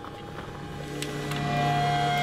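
Dark ambient film score: sustained held tones, joined about a second in by a deep low drone that swells steadily louder.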